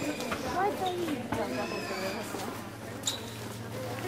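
A group of people walking and chattering, several voices overlapping without clear words, with a few sharp clicks that fit footsteps.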